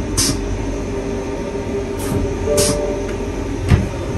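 Double-deck regional train running, heard as a steady low rumble inside the carriage, with several short, sharp hisses spread through it.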